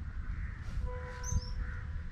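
Wind rumbling on the microphone, with birds calling: short high chirps about a second in and a brief steady tone alongside them.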